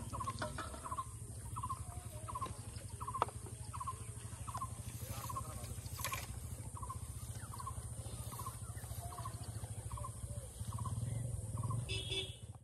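An animal's short call repeated about once a second, each a quick cluster of two or three notes at the same pitch, over a steady low hum. A few sharp clicks and a brief rustle about six seconds in.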